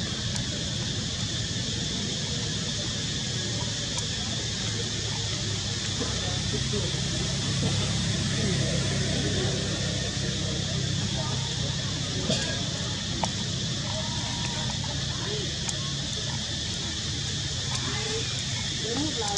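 Steady outdoor background: a constant high hiss over a low rumble, with faint, indistinct voices and a few small clicks.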